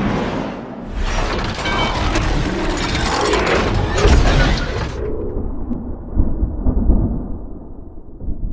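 Cinematic logo-reveal sound effects: a dense, loud crash of shattering noise with deep booms. About five seconds in the high end drops away, leaving a low rumble that slowly fades.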